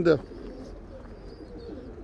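Domestic pigeons cooing faintly in the loft, a soft low coo under a brief end of speech.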